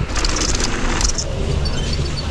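Rocky Mountain Maiden downhill mountain bike rolling fast down a dirt trail: tyre rumble, rattling of the bike, and wind buffeting the microphone. About a second and a half in, this gives way to a steadier low mechanical hum at a chairlift bike-loading station.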